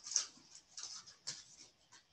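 Cards being handled: a few soft, irregular rustles and light clicks as they are moved and laid down.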